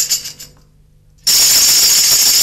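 Steady metallic jingling of a shaken tambourine that dies away in the first half second, leaves a short quiet gap, then starts again abruptly a little past a second in and runs on evenly.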